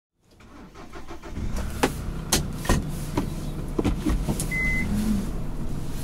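Car engine running, heard inside the cabin, rising from silence over the first second or so, with several sharp clicks and knocks and one short electronic beep about four and a half seconds in.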